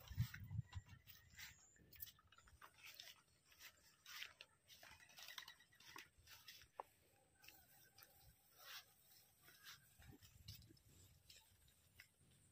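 Faint, scattered rustling and crackling of rice plants and footsteps as people walk through a paddy field; mostly quiet.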